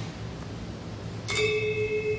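A high bronze key on a Balinese gamelan metallophone (gangsa) struck once with a mallet about a second and a half in, then left ringing as a clear, steady bell-like tone. It is one of a pair of instruments deliberately tuned slightly apart from each other.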